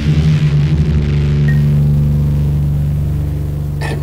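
A low heavy metal guitar chord held and ringing out after the drums stop, a steady deep drone that fades slightly near the end.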